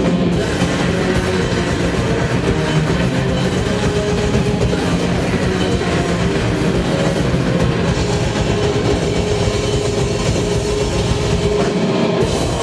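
A black and doom metal band playing live and loud: distorted guitars hold a thick, steady wall of sustained chords over the drums, with no break.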